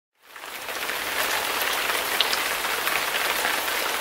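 Steady rain falling, fading in over about the first second: an even hiss with scattered drop ticks.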